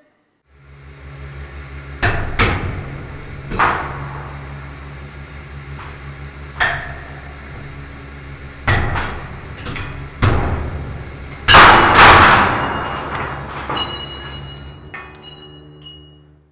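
150-ton hydraulic press humming steadily as it crushes nested steel ball bearings, with a string of sharp metallic cracks as the rings and balls give way. The loudest pair of cracks comes about three-quarters of the way through, followed by a faint high ringing.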